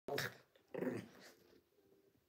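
Small curly-coated dog making two short growls, the second trailing off.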